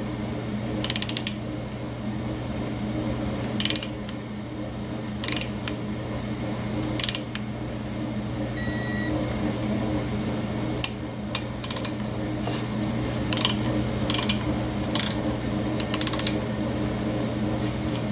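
Ratchet head of a digital torque wrench clicking in short strokes every second or so as a cylinder stud's head bolt is torqued down, with one short electronic beep about halfway through signalling that the set torque of 15–20 ft-lb has been reached. A steady low hum sits underneath.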